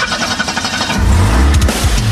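A car engine starting up and running, with loud heavy metal music playing in the car; a heavy low rumble comes in about a second in.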